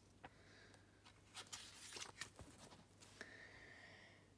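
Near silence, with a faint rustle and a few light ticks about halfway through as a picture book's paper page is turned by hand.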